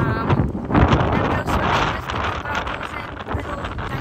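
Strong wind buffeting the phone's microphone, a heavy rumbling gust noise that is loudest in the first two seconds and eases off a little after.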